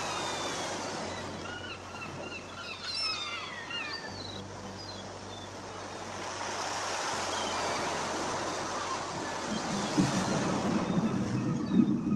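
Steady rushing noise like surf or wind, with a run of short high chirping calls in the first half.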